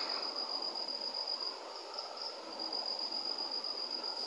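Insects trilling in one steady high-pitched tone, over a faint background hiss.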